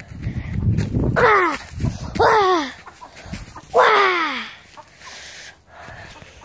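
Domestic chicken squawking three times, each loud call sliding down in pitch, about a second or so apart. Low rumbling noise runs under the first two seconds.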